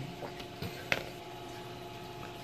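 Plastic bag of soft-plastic swimbaits being handled on a table: a few faint rustles and one short sharp click about a second in, over a faint steady hum.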